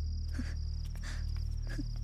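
Crickets chirring steadily in a high, finely pulsing drone over a low steady hum, with a couple of faint soft rustles.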